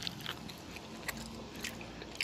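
Faint chewing with small, scattered crunchy clicks: someone eating close to the microphone.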